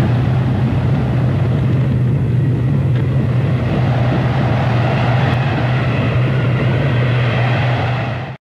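A loud, steady rumbling roar with a low hum beneath it, starting abruptly.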